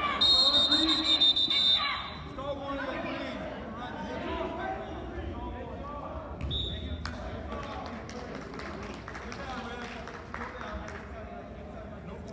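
A gym scoreboard buzzer sounds for about a second and a half at the start, a loud, high, rapidly pulsing electronic buzz marking the end of a wrestling period. About six seconds in a second short high tone is heard over the murmur of spectators' voices in the hall.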